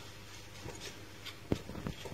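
Faint handling noise: a few soft clicks and taps as a metal exhaust tip and its box are handled. The sharpest click comes about one and a half seconds in.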